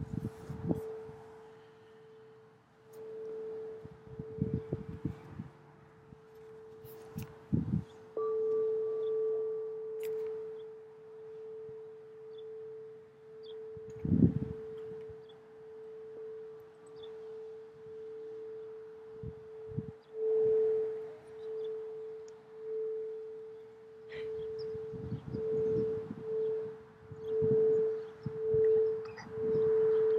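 Frosted crystal singing bowl being sung with a wand around its rim: one unbroken ringing tone that swells and fades in slow pulses, quickening near the end. A few short low thumps break in, the loudest about halfway through.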